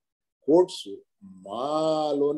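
A man speaking. After about half a second of dead silence come a few short syllables, then one long drawn-out vowel.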